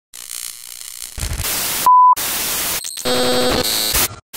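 Glitchy static bursts from an intro sound effect, starting and stopping abruptly. A short, loud, steady beep cuts in about two seconds in, and a buzzy electronic tone sounds briefly near the end.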